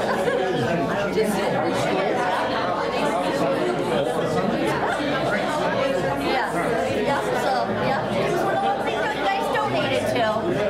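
Many people talking at once in a large room: a steady hubbub of overlapping conversations in which no single voice stands out.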